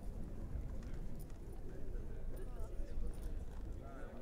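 Hoofbeats of an Anglo-Arab filly trotting in hand on turf, over a steady low rumble.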